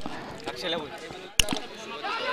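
A single sharp knock about one and a half seconds in, standing out over faint crowd voices at a floodlit cricket ground.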